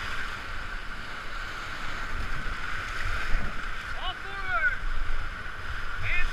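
Whitewater rapids rushing around an inflatable raft, heard from a camera on the raft, with low buffeting thumps throughout. A voice shouts briefly about four seconds in.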